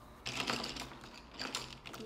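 Hands handling drawing things, a pencil and an eraser, on a tabletop: a run of scratchy rubbing and clicking noises.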